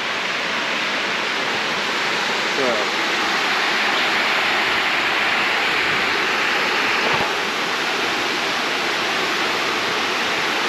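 Water pouring over a low weir across a creek, a steady, unbroken rushing.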